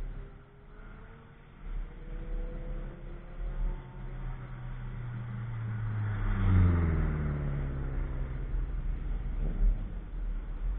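A Subaru Impreza's flat-four engine accelerating hard toward the listener, its pitch climbing. It is loudest as the car passes close by about six and a half seconds in, then the engine note drops in pitch and fades as it drives away.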